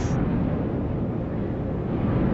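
Steady low rumble of an aircraft in flight, air rushing over the airframe just after SpaceShipOne's release from its carrier plane.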